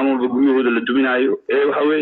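Speech only: one voice talking, with a brief pause about one and a half seconds in.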